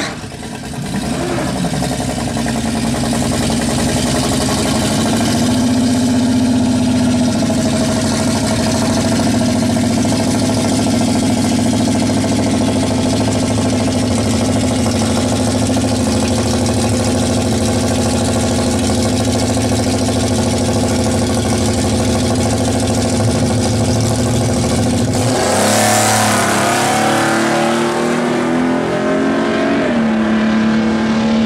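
Two drag race cars' engines idling with a loud, steady rumble at the starting line. About 25 seconds in, both launch at full throttle and their pitch climbs steeply as they accelerate away.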